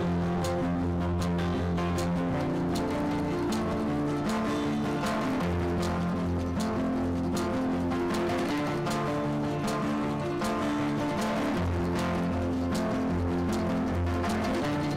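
Instrumental background music with a steady beat and held notes that change every second or so.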